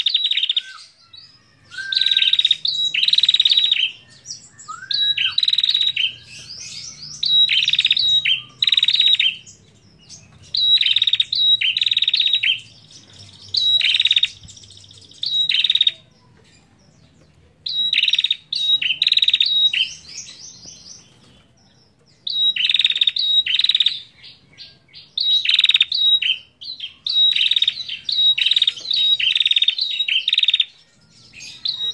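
A prenjak (tailorbird) calling in loud bursts of rapid, high-pitched chirps, each burst about a second long, repeated with short gaps. There are two longer pauses partway through.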